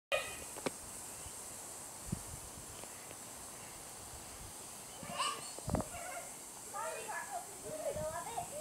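Young children's high-pitched wordless calls and squeals, mostly in the second half, over a steady faint hiss. There are two low thumps, one about two seconds in and one near the middle.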